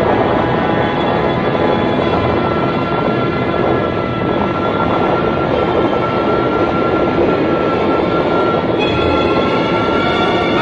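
Soundtrack sound effect of the Flood: a loud, steady rumbling roar of rushing water and storm, with sustained dramatic music tones held over it. Higher tones join the music about nine seconds in.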